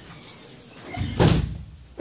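A single short bang a little over a second in, the loudest sound here, over a low murmur of room noise.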